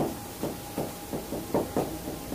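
Marker pen writing on a whiteboard: a quick string of short taps and strokes, about five in two seconds.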